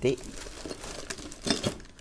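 Plastic wrapping and bubble wrap crinkling and rustling as packed engine parts are handled, with a few sharper rustles about one and a half seconds in.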